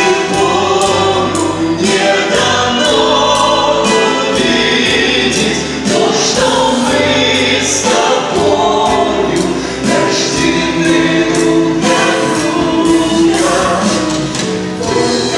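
Choral singing with instrumental accompaniment, a gospel-style Christian song, running steadily with long held notes.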